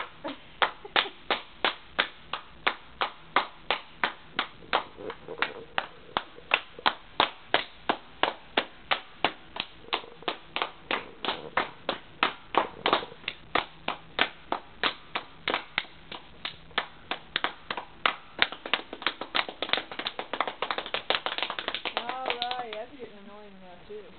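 Hands clapping steadily, about two to three claps a second; near the end the clapping quickens into a rapid run, then a person's voice is heard.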